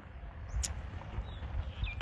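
Wind rumbling on a phone's microphone outdoors during a pause in speech, with one faint click about two-thirds of a second in.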